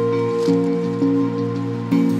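Background music: held tones with a new note or chord arriving about twice a second.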